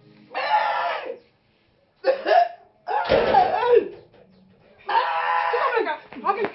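A man's voice calling out in four loud, wordless or unintelligible bursts, each up to about a second long, with the pitch sliding up and down.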